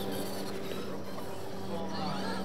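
A radio-controlled monster truck's electric motor whining over a steady low hum as the truck creeps along slowly.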